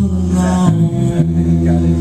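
Electric bass played live in an instrumental passage between sung lines: sustained low notes ringing on, changing pitch a couple of times.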